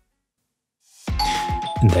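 Doorbell sound effect chiming two tones, a higher one and then a lower one, starting about a second in after a second of silence.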